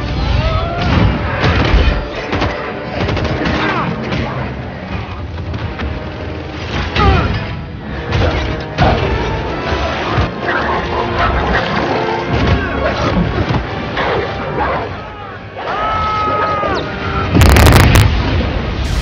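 Action-film battle soundtrack: orchestral score mixed with repeated booms, crashes and impact effects. A very loud burst comes near the end.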